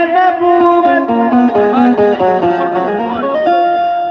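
Live qawwali music: harmonium playing a quick run of short stepping notes, then settling on a steady held note near the end.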